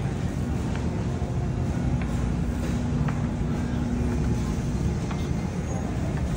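Shopping cart rolling across a polished store floor: a steady low rumble with a few faint rattles, over a steady hum.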